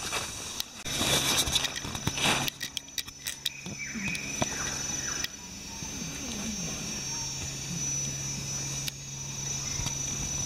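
Tropical forest ambience with a steady high insect drone. Loud rustling and crunching, like feet or hands in dry leaf litter, fills the first few seconds and is followed by a scatter of clicks.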